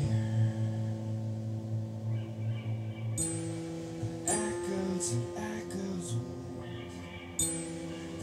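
A rock band playing live: sustained keyboard and electric guitar notes over a low bass note, with the chord changing about three seconds in. Cymbal crashes come in with that change, again about a second later, and near the end.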